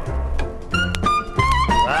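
Trad jazz band playing, bass and drums keeping the beat, with a short run of notes stepping downward in the second half.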